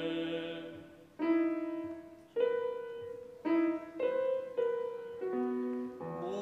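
Steinway grand piano playing a slow, sparse phrase of about six separate notes and chords, each struck and left to ring and fade. This follows a choir's held chord dying away about a second in.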